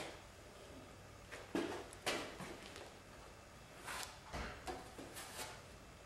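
A series of short, quiet scrapes and rustles as a plastic spreader works mixed body filler off a cardboard box, with handling of the box.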